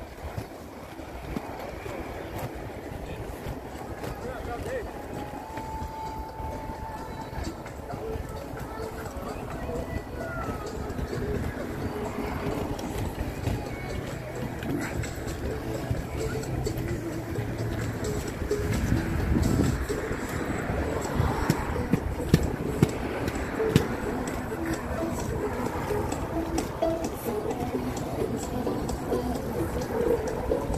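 Inline skate wheels rolling on a concrete sidewalk: a continuous rough rumble with scattered clicks, getting louder through the second half.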